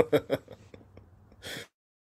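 A man laughing in a few short chuckles that die away within about half a second, then a short breath about a second and a half in.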